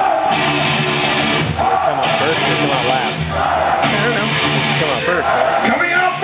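Loud rock music with electric guitar, played over a hall's sound system, with a riff pattern repeating about every two seconds.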